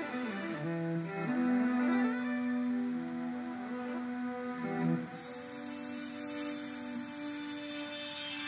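Electric viola playing long held notes through electronic effects driven by a dancer's arm gestures, which take over and shape the sound. About five seconds in it moves to a new sustained note and the sound turns brighter and hissier.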